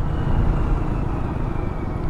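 Motorcycle riding at road speed: a steady engine hum mixed with wind and road noise on the rider's own camera.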